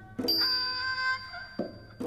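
Thai classical music: a so duang, the high-pitched Thai two-string bowed fiddle, playing a phrase of held notes. A short percussive stroke comes about a fifth of a second in and another near the end.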